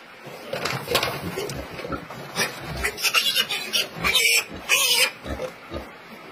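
Piglets squealing as they are held up by a hind leg, in a run of short cries that are loudest about three to five seconds in.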